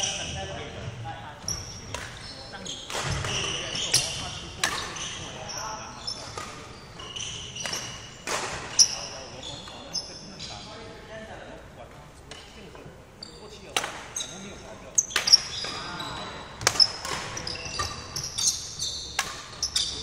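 Badminton rally in a large wooden-floored sports hall: sharp racket-on-shuttlecock hits at irregular intervals about every second or two, with footfalls and shoe squeaks on the court floor.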